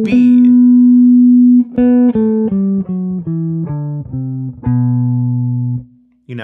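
Gibson Les Paul electric guitar playing single notes of a major-scale exercise. One note rings for over a second, then a run of about eight notes steps down the scale and ends on a long, low held note.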